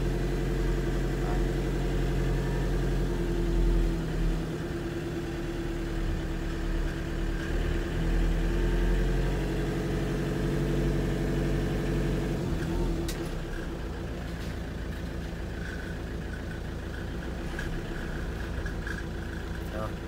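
2005 Ford Transit's diesel engine running smoothly as the van drives, heard from inside the cab. About twelve seconds in it eases off and runs quieter and steady.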